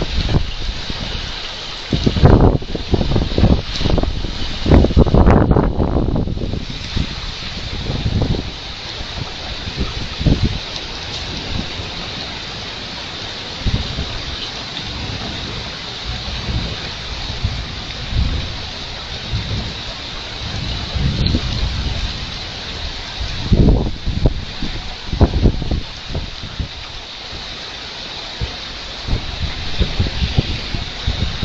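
Heavy rain falling as a steady hiss, with loud low rumbling surges a couple of seconds in and again near the end.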